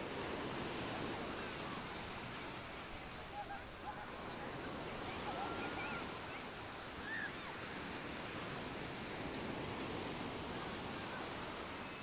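Ocean surf breaking and washing up a sandy beach: a steady, even rush of waves.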